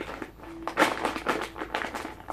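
Plastic sweet bag crinkling and rustling as it is handled and turned over, loudest a little under a second in.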